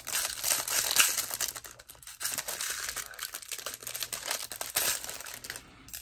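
Thin plastic packaging crinkling and rustling, with small clicks, as a clear plastic case of nail charms is handled and unwrapped. The crackling is irregular, loudest in the first second and again midway, and tails off near the end.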